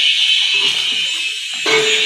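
A steady high-pitched tone, like an alarm or buzzer, holding unchanged in a gap between sung lines of a background song.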